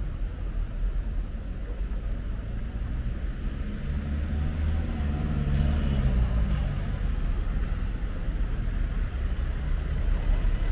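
Cars driving past close by on a city street over a steady low traffic rumble, one car's engine swelling and fading about four to six seconds in.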